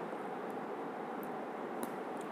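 Steady background hiss of room tone, with a few very faint soft clicks and no ringing tone.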